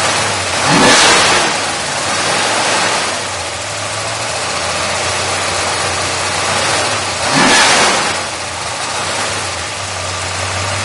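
1963 Dodge Polara's 426 Max Wedge V8 with dual four-barrel carburettors idling. The throttle is blipped twice, about a second in and again near the end, each rev rising quickly and falling back to idle.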